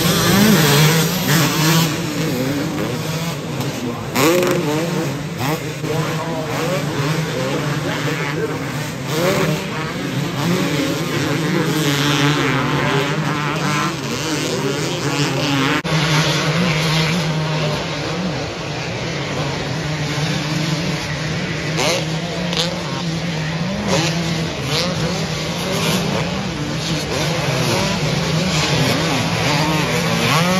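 Several motocross dirt bikes racing around a dirt track, their engines revving up and falling off again and again as riders accelerate, shift and jump, with several bikes heard at once.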